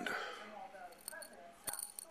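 A few faint clinks of small ceramic chip capacitors shifting against each other and the glass inside a jar, with one sharper click near the end.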